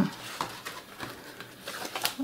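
Pages of a thick, paint-stiffened art journal being turned by hand: faint, soft paper rustling and handling sounds, after a short hummed 'hmm' right at the start.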